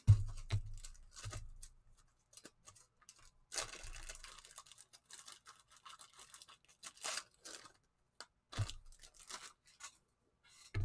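Handling noises out of view: a few knocks and thuds with bursts of rustling or scraping, the longest about three and a half seconds in.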